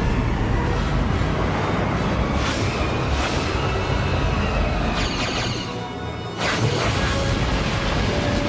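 Dramatic battle score with a deep, continuous starship rumble underneath, broken by several rushing blasts of weapons-fire and explosion effects, the longest near the end.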